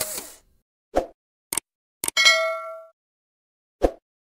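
Edited-in outro sound effects: a soft thump, a couple of clicks, then a bright bell-like ding about two seconds in that rings for under a second, and another thump just before the end.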